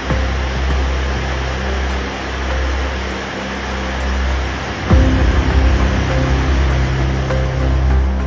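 Liquid rocket engine with a 3D-printed Inconel 718 regeneratively cooled thrust chamber firing on a test stand: a steady rushing roar of exhaust. Background music with sustained low notes and a light ticking beat plays over it, and a heavier bass swell comes in about five seconds in.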